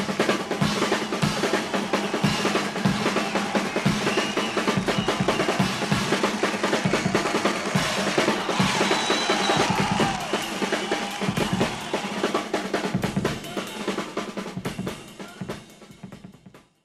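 A rock drum kit played hard and fast: dense strokes on snare and toms with bass drum and cymbals. It fades out over the last two seconds.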